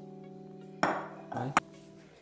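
A glass bowl knocking on a stone countertop as it is moved: a knock about a second in and a sharp clink near the end, over soft steady background music.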